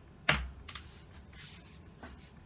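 Computer keyboard being typed on: one sharp, loud keystroke about a quarter second in, then a few lighter key taps.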